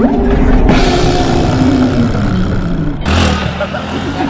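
A small motor scooter's engine running as it rides past and moves away, its pitch sinking slowly.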